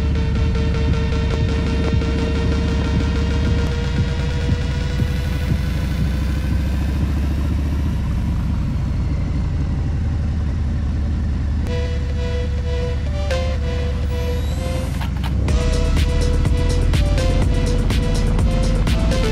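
Harley-Davidson Low Rider ST's V-twin engine running steadily while riding, a low rumble throughout. Background music with a melody comes in about twelve seconds in, and a beat joins a few seconds later.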